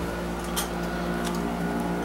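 Steady machine hum with a constant low drone, and a couple of faint clicks about half a second and a second in.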